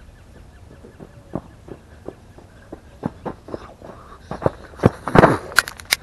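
Footsteps crunching on desert gravel, a few scattered steps at first, then closer and louder in the last second or two, ending with a few sharp clicks.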